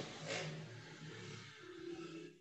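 Faint background hiss with a low hum from an open microphone on a video-conference line, between spoken turns.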